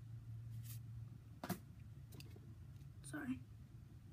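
Pokémon trading cards being handled one at a time: a soft slide of card on card, then a sharp card snap about one and a half seconds in, over a low steady hum. A brief murmured voice comes a little after three seconds.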